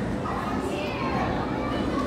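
Indistinct background chatter of museum visitors, with children's voices among it, over a steady hum of a busy indoor hall.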